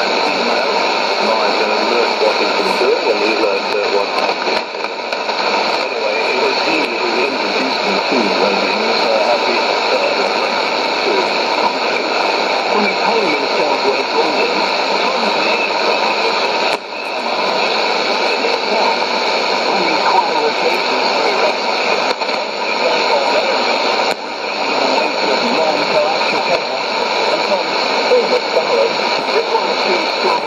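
Shortwave AM broadcast on 6160 kHz played through a Sony ICF-2001D receiver's speaker: weak, hard-to-follow speech buried in steady hiss and static, with a couple of brief dips in strength.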